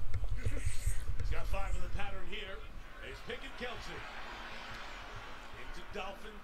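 Football TV broadcast commentary playing low in the mix: men's voices talking over the game. A low rumble sits under the voices for the first two seconds, then the sound drops to quieter talk.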